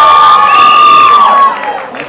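Loud crowd cheering, with many high-pitched screams and whoops held together, dying down about one and a half seconds in.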